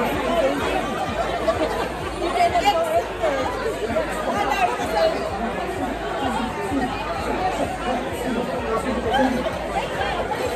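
Many people talking at once: overlapping chatter filling a busy bar room, with no single voice standing out.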